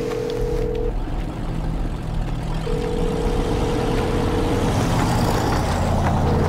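Film soundtrack: a low, steady rumble that slowly grows louder, under long held notes of a music score.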